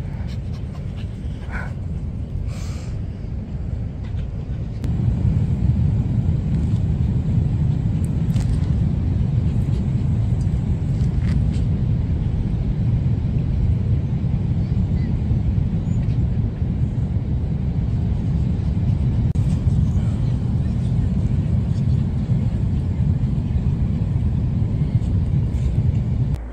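Steady low rumble of wind buffeting a phone microphone on an open beach, growing louder about five seconds in.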